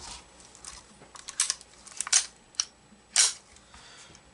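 Smith & Wesson Model 915 9 mm pistol being cleared by hand: the magazine is taken out and the action worked, giving several sharp metallic clicks spaced irregularly.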